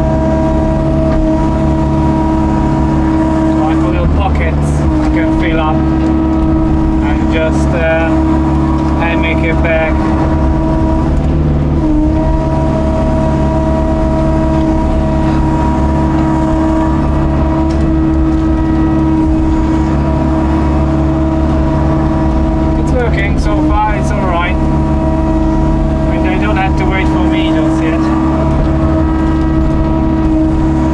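Excavator's diesel engine and hydraulics running steadily under load as the bucket digs mud, with a slight change in pitch now and then. Two spells of brief, wavering higher-pitched sound come through, early on and again near the end.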